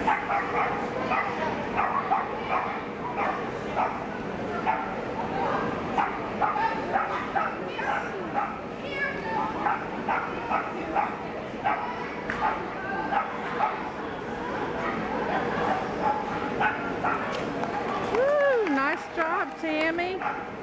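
Small dog barking over and over in short, high barks, several a second, while running an agility course.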